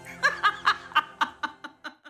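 A woman laughing in a run of short chuckles, about four or five a second, that fade away toward the end.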